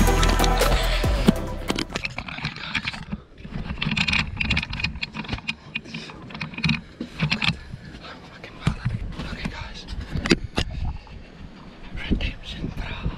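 Music that stops about two seconds in, followed by hushed, excited whispering and the small knocks and rustles of people moving about in a cramped hunting blind.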